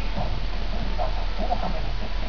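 Mallard ducks at close range making several short, soft calls, with small clicking knocks as they peck at the grass.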